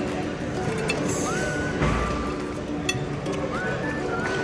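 Background music with steady notes, and a fork cutting into food on a ceramic plate, clinking a couple of times.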